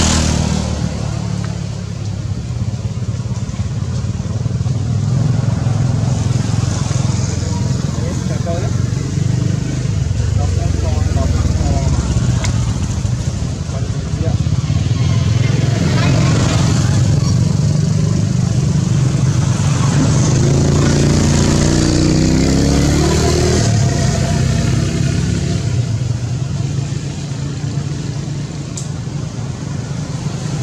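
A motor engine running with a steady low hum, its pitch wavering about two-thirds of the way through, with voices faintly mixed in.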